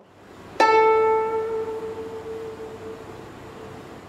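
A guzheng string is plucked once about half a second in. The single note rings out and slowly fades, with the string vibrated by the left hand to sustain it (chan yin vibrato).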